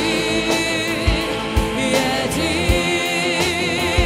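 Christian worship song in Russian: sung vocals with vibrato over sustained band accompaniment, with a steady low beat about twice a second.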